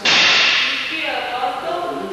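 A sharp crack of wooden practice swords (bokken) striking together, ringing on briefly in a large hall.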